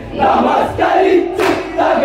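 A group of men singing a Malayalam folk song in unison as they dance, with a loud group shout about a second and a half in.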